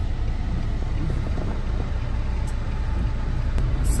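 Steady car noise heard from inside the cabin: a low rumble with a faint hiss over it.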